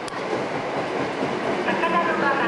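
Seibu Shinjuku Line electric train running at the station platform, a steady rail noise, with a sharp click at the very start.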